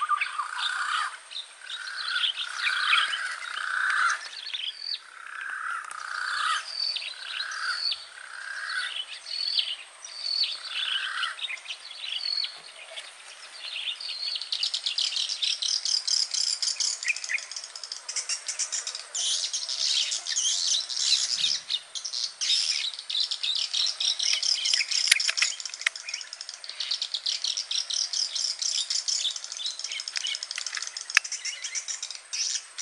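Birds calling: a run of short whistled notes about one a second for the first ten seconds or so, then continuous rapid high-pitched chirping from about halfway through.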